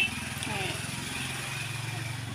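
A vehicle engine running with a steady low hum that rises slightly in pitch about a second in.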